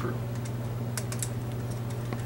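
A few light clicks of a screwdriver and a three-way wall switch being handled at the box, over a steady low hum.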